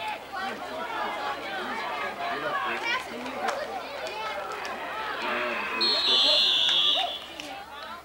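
Spectators chatter and call out. About six seconds in, a referee's whistle sounds one shrill, steady blast of about a second, blowing the play dead.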